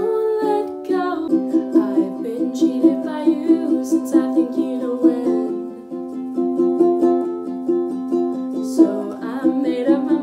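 A ukulele strummed in a steady, even rhythm, with a woman singing over it near the start and again near the end.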